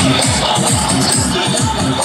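Loud electronic dance music with a heavy, fast-repeating bass beat, blasting from a truck-mounted DJ loudspeaker stack.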